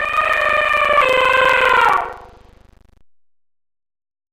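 A horn-like sound effect for the logo intro: one sustained tone with strong overtones, dipping slightly in pitch about a second in, then fading out after about two seconds, followed by silence.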